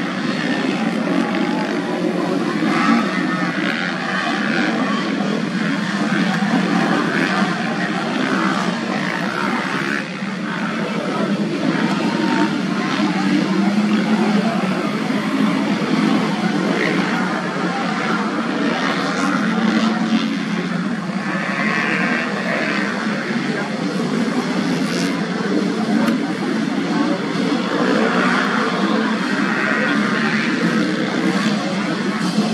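Motocross bike engines running on a dirt track, a loud continuous din with no breaks.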